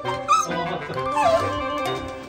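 Miniature schnauzer crying out: a short, high cry about a third of a second in, then a longer cry falling in pitch past the middle, over background music. The dog is upset at being left home alone; the owner can't tell whether it is loneliness or anger.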